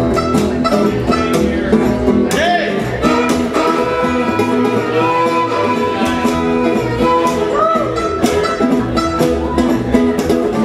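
Acoustic string band playing an instrumental bluegrass-country passage: a fiddle carries the lead over a strummed acoustic guitar and a plucked upright bass, with a steady strummed beat.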